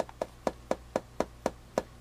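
Fingertip tapping on the front of an RCA Senior VoltOhmyst meter, about four light, sharp taps a second in an even rhythm.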